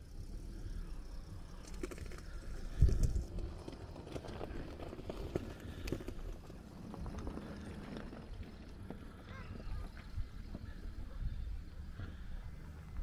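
Wind rumbling on the microphone on an open shingle beach, with scattered small clicks and knocks and one louder thump about three seconds in.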